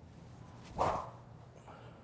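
A single short swish of a SuperSpeed Golf medium-weight speed-training stick swung through the air at full speed, just under a second in; no ball is struck.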